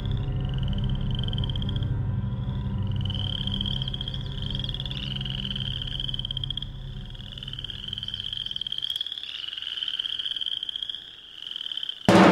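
Choir voices in an extended vocal technique: a chain of short, high, rising calls, each with a fast rattle, overlapping one after another over a low hum. The hum drops away about nine seconds in.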